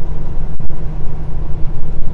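Steady rumble of a semi truck's diesel engine and road noise heard from inside the cab while it drives along at moderate speed.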